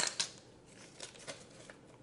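Plastic measuring spoons clattering down onto a granite countertop: a sharp click at the start and a second just after, then a few faint light taps.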